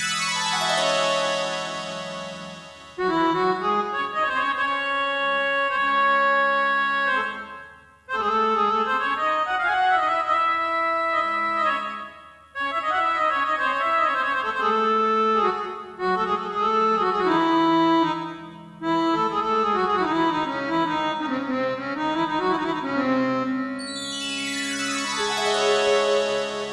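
Harmonium and electronic keyboard playing an instrumental introduction to a song: sustained, reedy melodic phrases broken by a few short pauses, with a bright downward sweep at the start and again near the end.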